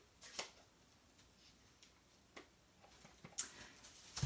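Near silence with a few faint clicks and taps as a clear acrylic stamp block is inked on an ink pad.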